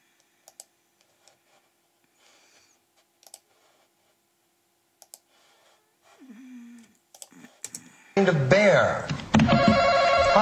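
Sparse computer mouse and keyboard clicks over a faint steady hum, then about eight seconds in loud game-show audio with voices cuts in suddenly.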